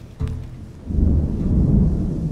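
Dramatic film score with a deep low rumble that swells up sharply about a second in and holds.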